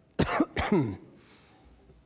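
A person clearing their throat in two short, loud coughs about a quarter second apart, the second sliding down in pitch.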